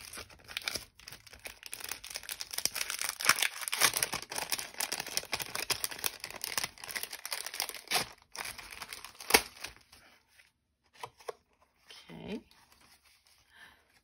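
Clear cellophane packaging crinkling and tearing as it is pulled open, with two sharp snaps about eight and nine seconds in. It thins out to a few faint rustles over the last few seconds.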